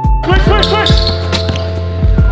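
A basketball dribbled on a hardwood gym floor, bouncing several times, while a player calls out "switch" and music plays underneath.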